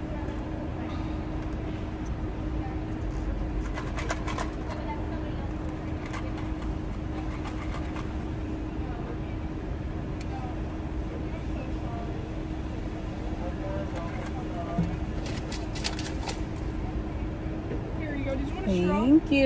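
Steady low rumble and a constant hum inside a stationary car, with faint muffled voices and a few light clicks and handling noises, around four seconds in and again near the end.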